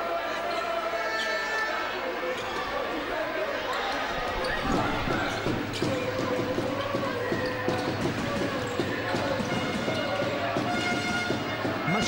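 A basketball being dribbled on a hardwood court during play, with repeated bounces from about five seconds in, over the murmur of voices in the arena.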